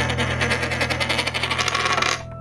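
Outro jingle: a low held chord with a fast, rattling whir over it, about a dozen pulses a second, that cuts off suddenly near the end and leaves the chord ringing.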